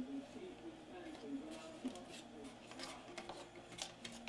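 Faint clicks and fingertip handling as a plastic volume knob is pushed and turned onto its shaft on a portable job-site radio's metal front panel.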